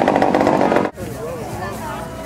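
A loud, steady buzz of a small engine that cuts off suddenly about a second in, giving way to the murmur of people talking.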